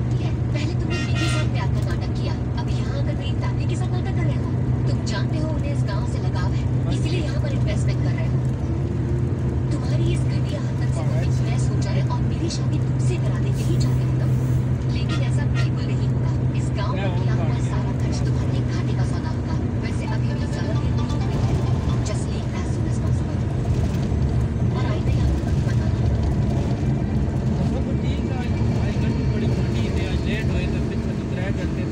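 A steady low engine drone with voices over it; the drone's note shifts about two-thirds of the way through.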